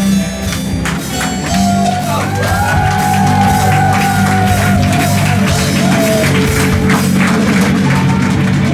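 Live rock band playing with drums, electric guitar and keyboards; a long held note in the middle of the passage slides up and then slowly falls in pitch.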